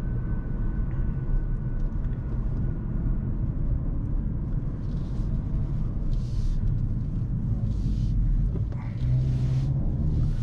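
Hyundai Kona N's 2.0-litre turbocharged four-cylinder engine and sport exhaust, with road rumble, heard from inside the cabin while driving in sport mode. The low engine note steps up near the end.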